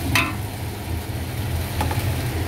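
Steady low roar of a gas stove burner under an aluminium pot of onions frying. A spatula strokes the pot once just after the start and once near the end.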